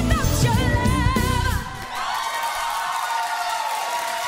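A female singer with a live band finishing the last sung phrase of a pop song; the music stops about one and a half seconds in, and the studio audience breaks into applause and cheering.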